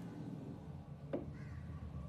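A sharp knock about a second in, followed by a faint, short bird call over a low steady hum.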